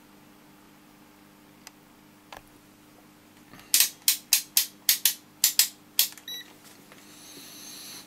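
Rotary selector dial of a digital multimeter clicking through about ten detent positions in quick succession, then the meter giving a short high beep as it switches on to a range.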